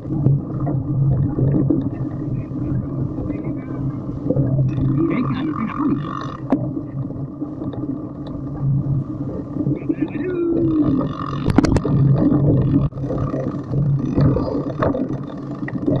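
Riding noise from a handlebar-mounted camera on a bumpy dirt forest track: a steady low hum with rattles, and two sharp knocks, about six and about eleven seconds in.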